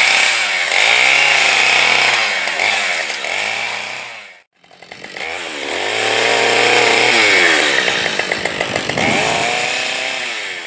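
Brand-new Husqvarna 572XP 70cc two-stroke chainsaw, in its break-in, running at high revs with its pitch wavering under load. The sound breaks off abruptly about four and a half seconds in, then the saw is running at high revs again.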